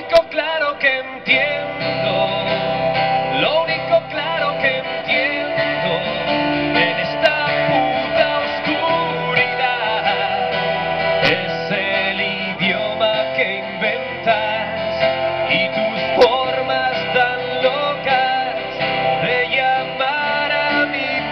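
Live band music led by a strummed acoustic guitar, with other instruments playing along continuously.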